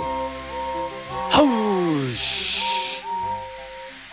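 Background music with a sudden hit and a falling slide about a second in, then a burst of steam hissing lasting about a second as the engines let off steam.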